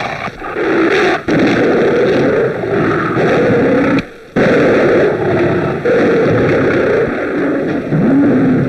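Tiger growling and roaring in a loud, dense run of snarls, one every second or so, with a brief break about four seconds in.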